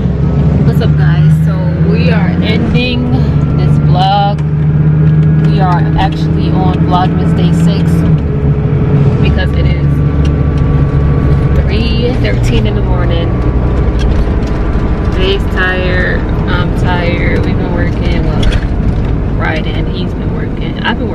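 Bus engine running, heard inside the cabin as a steady low drone whose pitch shifts a few times, with people's voices talking over it.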